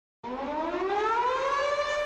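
Air-raid-style siren sound effect winding up: a single wailing tone that starts about a quarter second in, rises smoothly in pitch, then levels off.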